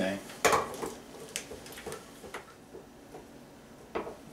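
A few light metallic clicks and clinks from tin cans being handled and a hand-held manual can opener being fitted and worked on a can. The sharpest click comes about half a second in.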